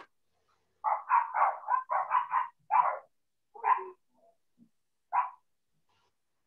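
A dog barking: a quick run of about eight barks, then two more single barks spaced out.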